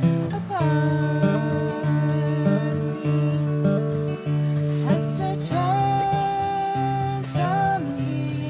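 Acoustic guitar strummed in chords, accompanying a singing voice that holds long notes and slides between them.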